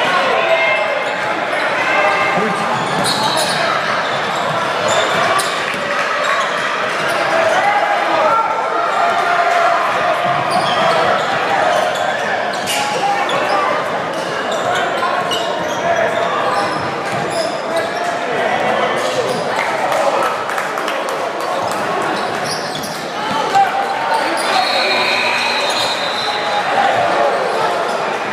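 Live basketball game in a gym hall: the ball bouncing on the hardwood floor in a run of short knocks, over a steady din of players' and spectators' voices.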